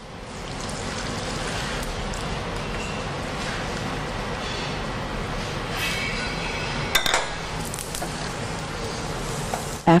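Steady hiss of cream being strained through a metal sieve into a stainless steel saucepan, against kitchen background noise, with a few metal clinks about six to seven seconds in.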